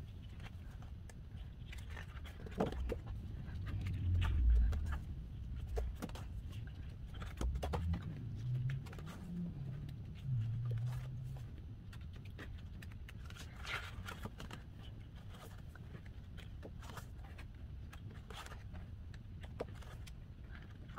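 Pages of a glossy photobook being turned and handled on a table: soft paper rustles and light ticks throughout, with a low muffled bump about four seconds in.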